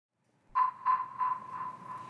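A ringing ping tone that starts about half a second in and pulses about three times a second, each pulse weaker, fading like an echo. It is an edited-in sound effect.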